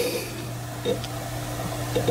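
A steady low hum with a fainter, higher steady tone over it, and a soft click about a second in.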